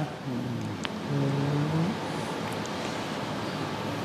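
A person's low, drawn-out vocal sound, an 'ooh' held twice in the first two seconds, then only steady background noise.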